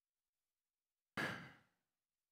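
A man's short sigh, a sharp exhale about a second in that fades away within about half a second; the rest is dead silence.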